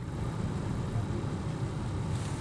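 Steady low rumble of a car, heard inside the cabin.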